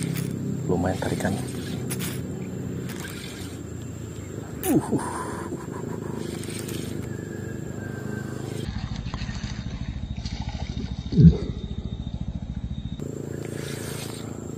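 Small Versus Carbotech 2000 spinning reel being cranked to retrieve a lure: a steady low whirr with fine rapid ticking. Two short louder sounds stand out, about five seconds in and, loudest, near eleven seconds.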